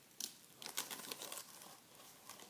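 Crinkling and rustling of hockey gear being handled: a few short, faint crackles with small gaps between them.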